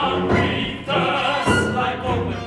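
Male opera chorus singing a loud phrase together, the line breaking off briefly about a second in before the voices come back.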